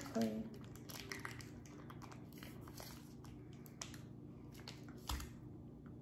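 A plastic bag crinkling and rustling in short scattered crinkles as a lump of modelling clay is pulled out of it, with one soft low thump about five seconds in.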